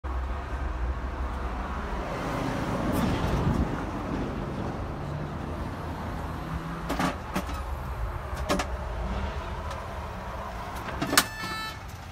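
Street ambience with a steady traffic rumble, swelling as a vehicle passes about three seconds in. A few sharp clicks come in the second half, and a brief high-pitched tone sounds near the end.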